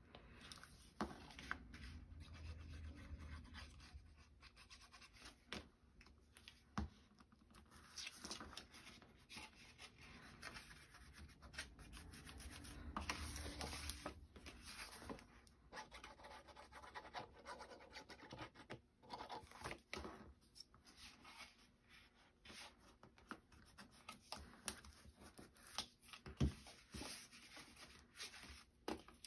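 Faint scratching and rubbing of cardstock as it is glued, folded and pressed down by hand on a cutting mat, with a few soft clicks.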